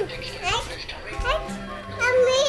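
A toddler's voice, two short rising squeals about a second apart, over a steady tune playing in the background.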